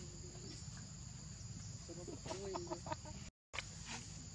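A few short, pitched animal calls about two seconds in, over a steady insect drone and low rumble. The sound drops out for a moment just before the end.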